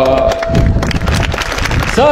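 A group chant breaks off just after the start, and a crowd claps with voices mixed in: dense, irregular clapping for the rest of the stretch.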